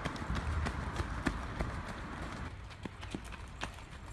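Running footsteps on a dirt path strewn with twigs and leaves, a string of irregular light thuds and snaps, over a low rumble that drops away a little past halfway.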